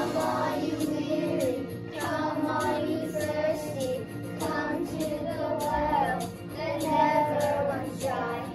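A class of young children singing together in short phrases over an instrumental accompaniment.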